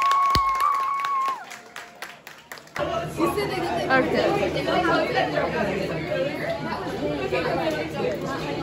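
A voice holds a high sustained note that stops about a second in. After a short lull, many people chat at once, their voices overlapping.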